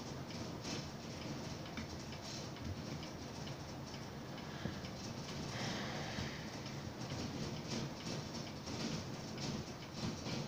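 Scattered light clicks and rustles of rubber bands being handled, pulled and looped over a cord.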